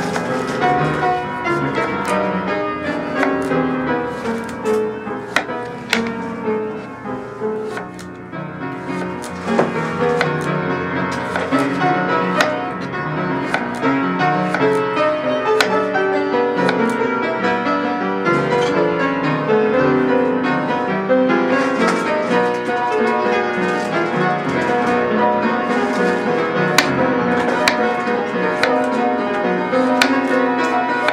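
Classical piano music playing throughout, with occasional sharp knife strokes on a plastic cutting board as a large zucchini is sliced into rounds.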